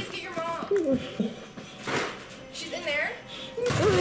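A man imitating a dog, giving a string of short yelps and whines that mostly fall in pitch, the loudest near the end, over background music.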